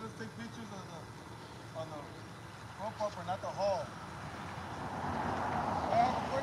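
A security patrol car rolling slowly up close, its tyre and road noise building steadily from about four seconds in.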